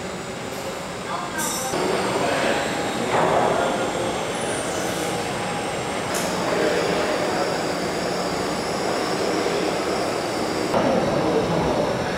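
Steady, dense rumbling noise with indistinct voices mixed in.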